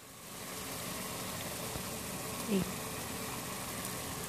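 Water simmering in a pot of steaming meatballs, a steady hiss that is briefly lower at the start. About two and a half seconds in, a short low vocal sound from a person, the loudest moment.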